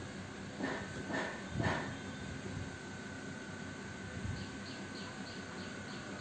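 Quiet background with a steady faint high tone. A few faint short sounds come in the first two seconds, and a run of faint quick chirps in the last second and a half, like a small bird or insect outside.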